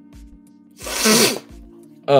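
A man sneezes once, loudly, about a second in, over background music with a steady beat.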